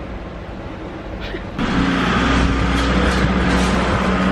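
A steady low motor hum with a background rush; about a second and a half in it jumps louder to a steady drone.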